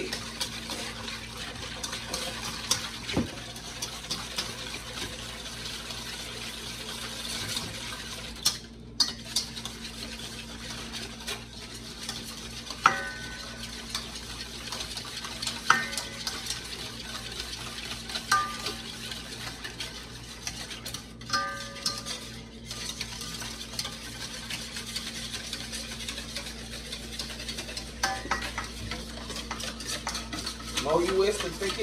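Wire whisk beating instant pudding mix and milk in a stainless steel mixing bowl: continuous rapid scraping and clicking of the wires against the metal bowl, the mixture still thin and not yet thickened.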